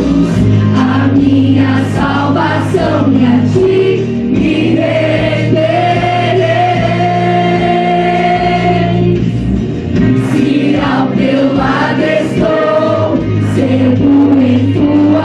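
Group of young voices singing a gospel song together through microphones, over instrumental accompaniment with steady low notes. One long note is held in the middle.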